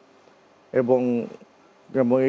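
A man's voice saying one drawn-out word ("ebong", "and") about a second in, between quiet pauses of room tone.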